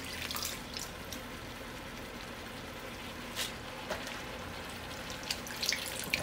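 Shrimp shells and vegetables cooking in oil in a stainless steel stockpot before any liquid is added: a steady faint sizzle with scattered small pops and crackles.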